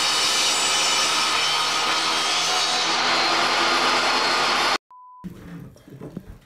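Table saw running steadily as its blade cuts through a wooden board. The saw sound cuts off suddenly about five seconds in, followed by a brief steady beep.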